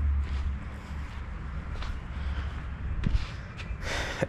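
Footsteps on concrete over a low rumble that is strongest in the first second and then eases.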